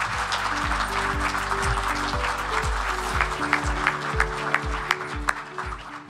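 Audience applauding over walk-off music with a steady low beat and held notes, the music fading out at the end.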